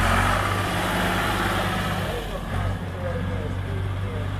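A vintage Ford tractor's engine runs steadily under throttle as the tractor drives off, with a short dip in the engine note a little past halfway.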